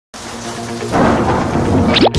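Thunder rumble sound effect over intro music, swelling louder about a second in, with a quick falling whistle-like sweep at the very end.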